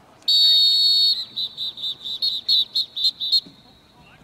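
Referee's pea whistle: one long shrill blast, then about ten quick short blasts, blowing the play dead after a tackle.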